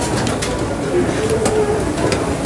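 Kitchen knife cutting folded kalguksu dough into noodles on a plastic cutting board, giving scattered sharp knocks of the blade on the board, over a busy background of voices.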